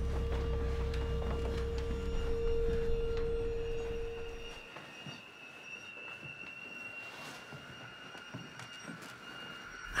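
Horror trailer tension drone: a low rumble under a steady mid-pitched tone, both fading away about halfway through, then a thin high-pitched tone held on.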